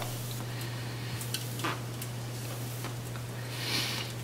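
Fly line being drawn through a towel by hand: soft rubbing with a few faint clicks, over a steady low hum.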